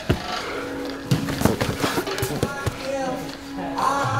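No-gi grappling on foam mats: bodies shifting, scuffing and knocking against the mat and each other, with a cluster of short sharp knocks in the middle, over steady background music.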